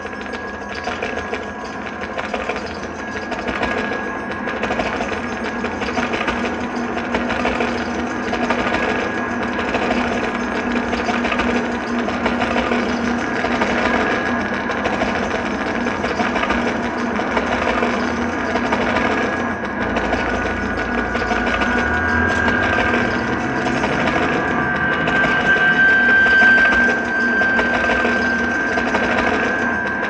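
Experimental drone-noise from a prepared electric guitar run through effects pedals: a dense layered drone of steady tones under a fast, even, machine-like pulse. A high steady tone grows louder in the second half.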